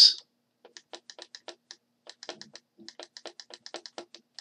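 Pen stylus clicking and tapping on a drawing tablet during handwriting: a quick, irregular run of light clicks starting about half a second in.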